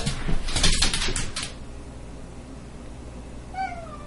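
Loud bursts of scuffling noise for the first second and a half, then, near the end, one short call that falls in pitch, like a meow.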